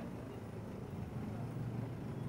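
Busy street ambience dominated by a motor vehicle's engine running close by: a steady low hum that strengthens slightly in the second half.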